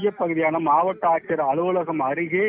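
A man speaking continuously, his voice thin and telephone-like.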